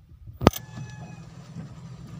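Steady low hum of a car's engine and road noise heard from inside the cabin, with one sharp click about half a second in.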